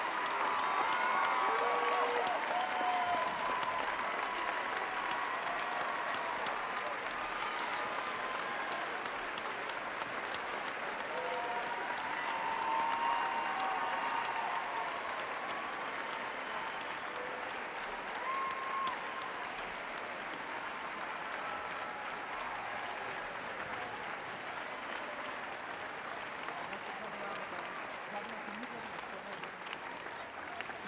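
A large audience applauding steadily for a long stretch, with scattered voices calling out over the clapping in the first few seconds; the applause slowly dies down.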